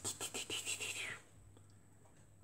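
Paper scratchcard being handled and slid into place on a table: a quick run of faint light rustles and taps in the first second, then near silence.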